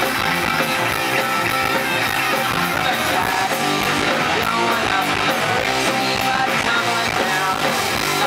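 Live rock band playing a song, driven by two electric guitars, loud and steady.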